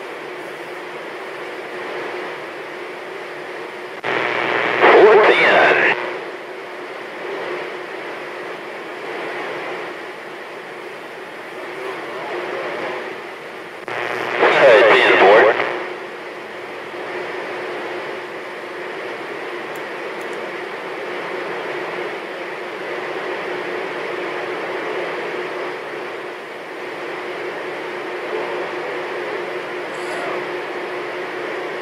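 CB radio receiver giving off steady static hiss with a faint hum. Twice, about four and fourteen seconds in, a distant station breaks through for a couple of seconds as a garbled, wavering transmission: signals coming in on skip.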